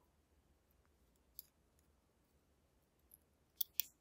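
Small metal clicks from tweezers handling lock pins against the lock cylinder and brass pin tray: a faint tick about a second and a half in, then two sharper clicks in quick succession near the end.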